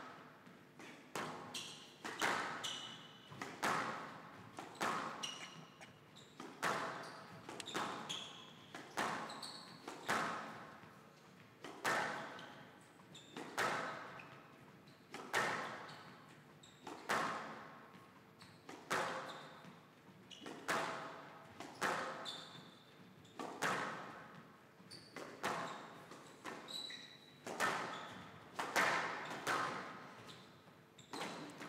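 Squash rally: the ball cracking off the players' rackets and the court walls in a steady run of sharp, echoing hits, roughly one a second, with short high squeaks between some of them.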